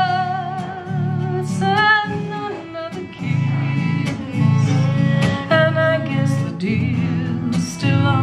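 Live acoustic band: a woman singing a blues, with strummed guitar and bowed fiddle behind her.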